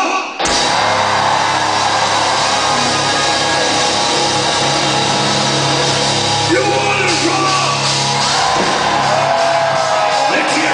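Live gothic rock band with electric guitars, bass and drums kicking in loudly all at once about half a second in and playing on, with the echo of a large hall.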